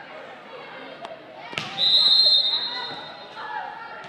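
Volleyball referee's whistle blowing one steady, high blast of about a second, the loudest sound, just after a sharp smack of the ball, over spectators' voices echoing in a gym.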